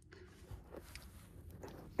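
Quiet handling noise: a few soft clicks and rustles as multimeter test leads and solar-panel cable connectors are picked up and moved.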